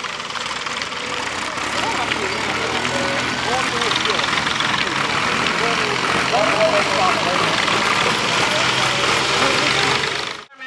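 A farm tractor's diesel engine running steadily, with crowd voices chattering over it.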